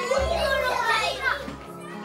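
A child's raised voice, high and rising and falling in pitch for about a second and a half, over soft background music with low held notes.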